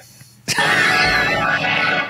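Men laughing hard, a loud outburst of laughter that starts about half a second in and keeps going.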